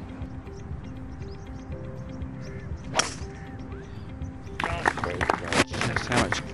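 A golf club strikes the ball once, a single sharp crack about three seconds in, over faint background music. Near the end comes a louder, busier stretch of noise with voices.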